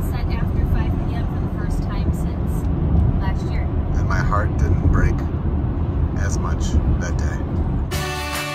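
Steady low road rumble of a moving car heard from inside the cabin, with short snatches of indistinct talk now and then.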